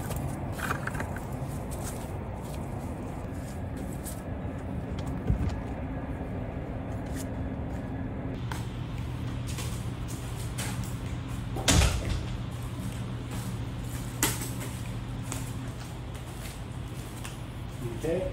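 A greenhouse door and a carried plastic bucket: a few knocks and clunks, the loudest about two-thirds of the way through, over a steady low hum.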